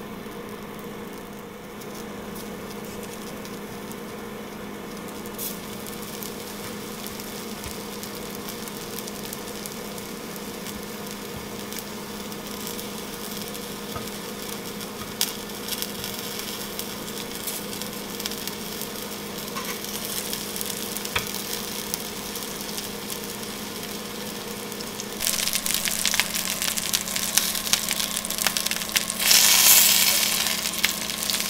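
Pork-wrapped egg balls frying in hot oil in an enamelled cast-iron Staub pan, sizzling and crackling more and more as more balls go in. The sizzle rises sharply a few seconds before the end and is loudest at the close. A steady low hum runs underneath.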